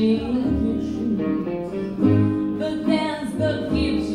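Live gypsy jazz band: acoustic guitars strumming and a double bass plucking low notes, with a woman singing.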